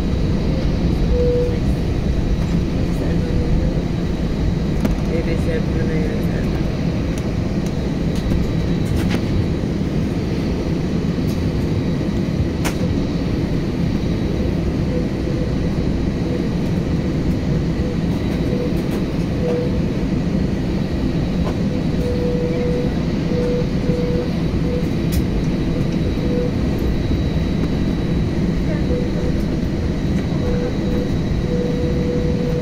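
A jet airliner's turbofan engines at taxi power, heard from inside the cabin over the wing: a steady low rumble with a faint high whine, and no change in power.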